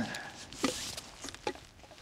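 Hands rummaging in a nylon stuff sack: soft rustling with two light knocks, a little over half a second in and again about a second and a half in.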